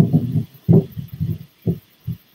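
A string of about six dull, low knocks and bumps at uneven intervals: a framed painting being lifted off its nail and knocking against the wall.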